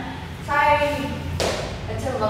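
A woman's voice is heard briefly, followed by a single thump about one and a half seconds in: a dancer's sneaker landing on a wooden studio floor.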